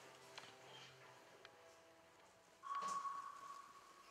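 A single ringing ping about two-thirds of the way in: one clear tone that starts sharply and fades away over more than a second, heard over faint steady tones in a quiet room.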